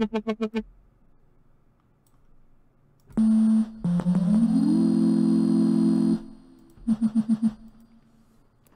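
Serum software synthesizer notes played back with no speech. A single note stutters rapidly, about ten pulses a second. After a pause, a held tone comes in, glides upward in pitch with a hiss over it, and cuts off. Another rapid stutter follows near the end. This is a sine-wave preset with an LFO on it.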